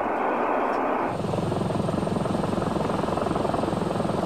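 Aircraft noise: a steady rush that, about a second in, gives way to a rapid, even chopping pulse that holds steady.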